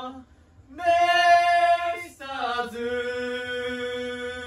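A voice singing a cappella in long held notes. After a short break near the start comes one note, then a note that dips in pitch and settles into a long held tone.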